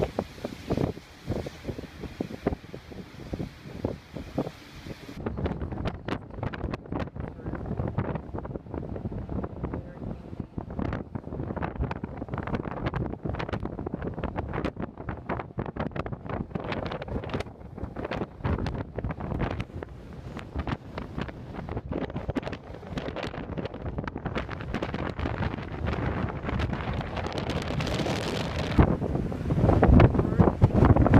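Strong wind buffeting the microphone in uneven, irregular gusts, a rough low rumble that does not let up.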